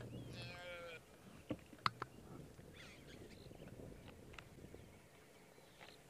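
An impala lamb bleating once, a call of under a second: a lamb that has lost its mother and is calling for her. A few faint sharp clicks follow about a second and a half and two seconds in.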